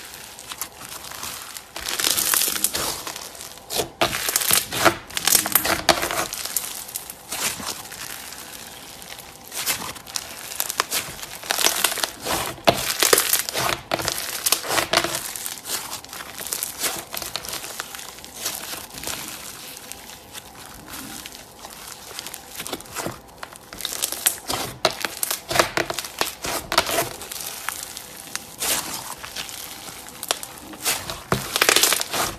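Crunchy foam-bead slime (floam) being stretched and squeezed by hand, giving dense crackling with louder crunchy bursts and quieter stretches between.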